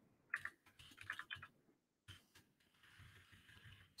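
Faint computer keyboard keystrokes, a few scattered clicks in the first two seconds, then near silence.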